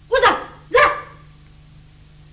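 Two short dog barks, about half a second apart.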